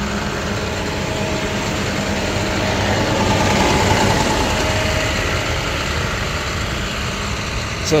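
Medium-duty flatbed tow truck's engine idling steadily, growing louder about three to four seconds in, then easing off again.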